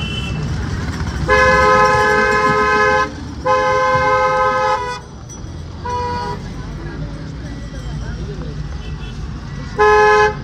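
Two-note vehicle horn honking: two long blasts of about a second and a half each, a short toot about six seconds in, and another near the end. A steady low rumble of road vehicles runs underneath.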